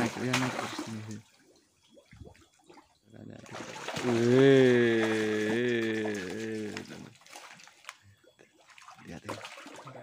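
Catfish splashing at the water's surface at the edge of a pool, with a sharp splash at the start and faint water noise after. A person's long, wavering vocal sound of about three seconds in the middle is the loudest thing.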